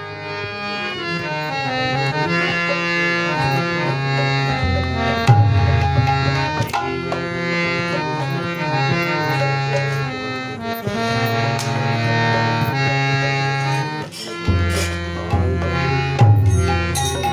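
Harmonium playing a held melody over chords, joined about four and a half seconds in by a hand drum's deep bass strokes and sharper slaps: the instrumental opening of a Bengali kirtan, with no singing yet.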